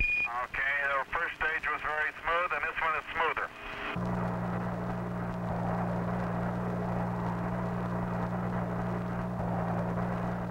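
Indistinct mission air-to-ground radio voice, thin and narrow like a radio link, opening with a short high beep. At about four seconds the voice stops and a steady low hum with a hiss carries on.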